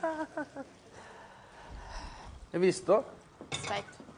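Short bursts of voices, with faint kitchen handling in the gaps as pasta is tipped from a frying pan onto a plate.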